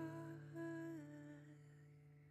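A woman's voice humming a last soft note that steps down slightly in pitch about a second in and fades out. Under it, the final chord of an acoustic guitar rings and slowly dies away.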